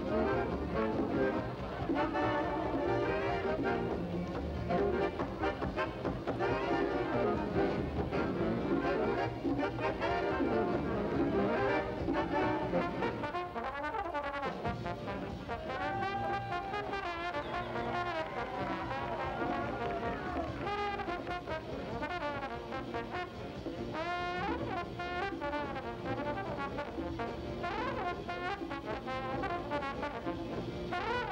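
Big band jazz from an early-1950s television broadcast played back over loudspeakers in a hall, with a trombone featured over the band in the second half.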